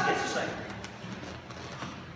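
A voice that fades out in the first half-second, followed by low room sound with no distinct event.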